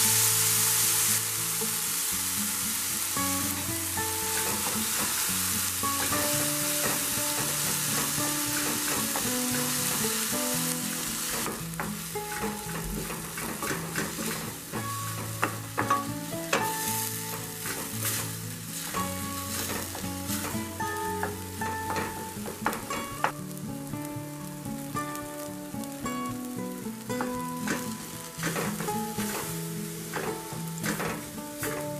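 Chopped onion and tomato sizzling in hot oil in a stainless steel pan while a wooden spoon stirs them. The sizzle is strongest in the first dozen seconds, then thins to a softer frying sound broken by frequent scrapes and clicks of the spoon against the pan. Instrumental background music plays throughout.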